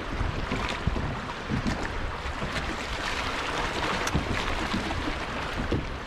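Wind buffeting the microphone over small waves lapping against a kayak hull, a steady low rumble with scattered little slaps of water.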